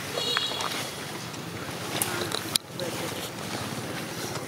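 Outdoor ambience dominated by wind noise on the microphone. A brief high-pitched call comes just after the start, and a few sharp clicks come about two seconds in.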